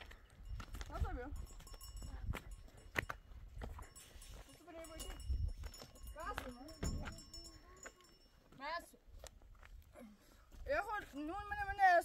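Livestock bleating several times, wavering calls that come and go, the longest near the end, over a low outdoor rumble.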